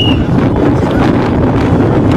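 Wind buffeting a phone's microphone in a loud, steady rumble, over the chatter of a surrounding crowd.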